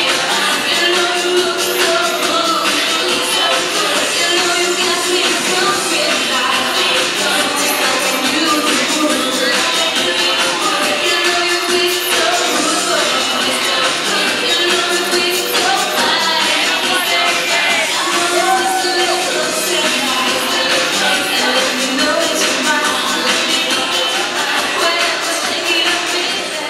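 Swing dance music with a singer, played loud over the hall's loudspeakers for ballroom couples dancing swing, with a little crowd noise underneath.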